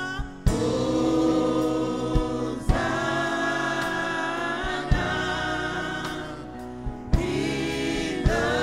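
Gospel choir singing long held chords with band backing, broken by a few sharp drum hits.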